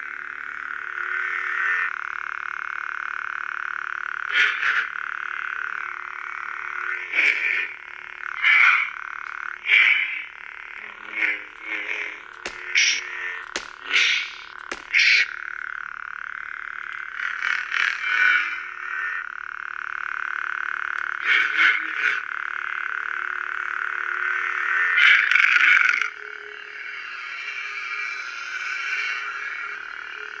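Galaxy's Edge Legacy lightsaber's built-in speaker playing its steady blade hum, with many short louder swing and clash effects as the hilt is handled. Near the end the hum becomes quieter and changes tone as the blade colour is switched from green to blue.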